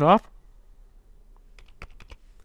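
Computer keyboard keystrokes: a quick run of several sharp key clicks in the second half, typing a search into a web browser.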